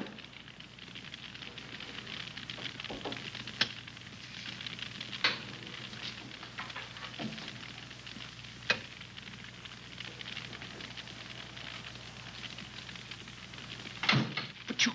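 Quiet stretch of an old film soundtrack: steady hiss with a low hum, broken by a few sharp clicks about three and a half, five and eight and a half seconds in.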